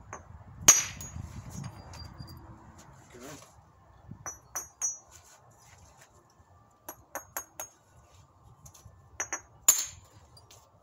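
Flintknapping percussion on a stone core: a sharp strike about a second in, then several groups of lighter clicks and clinks of stone, and a second sharp strike near the end.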